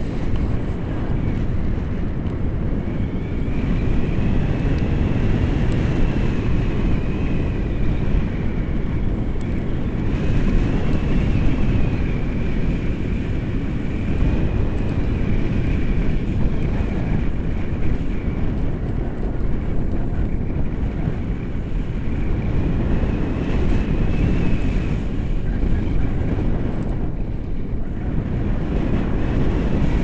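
Heavy wind noise from airflow buffeting an action camera's microphone in tandem paraglider flight, a steady low rushing sound. A faint thin high tone wavers slowly in pitch underneath it.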